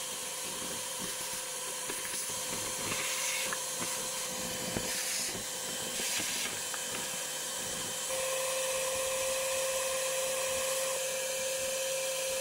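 Ash vacuum cleaner running, its hose sucking fine fly ash from around the turbulators and tube openings on top of a wood chip boiler's heat exchanger: a steady hiss with a whining tone that grows louder a little past halfway.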